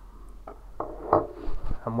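A few light knocks and clicks of a small object being handled, then a man's voice begins near the end.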